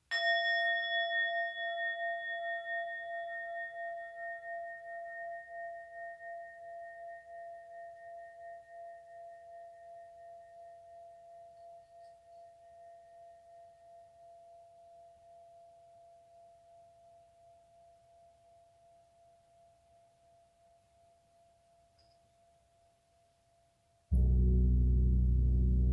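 A small brass singing bowl on a wooden handle, struck once with a striker and left to ring: a clear bell-like tone with several overtones and a slow wavering pulse, fading gradually over more than twenty seconds.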